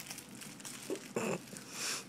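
A man's short grunt a little past a second in, then a breathy exhale near the end, as a shot goes down.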